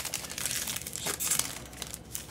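Thin plastic card sleeve crinkling in irregular small crackles and clicks as a trading card is handled and slid into it.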